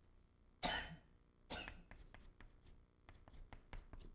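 A man coughs once, about half a second in. Then a stick of chalk taps and scratches on a blackboard in quick, separate strokes as characters are written.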